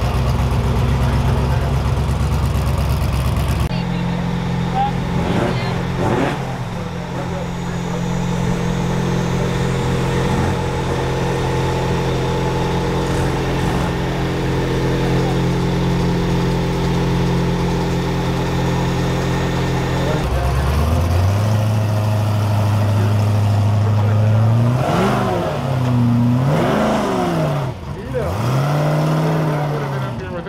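Off-road race vehicle engines idling steadily, then blipped several times near the end, the pitch rising and falling with each rev.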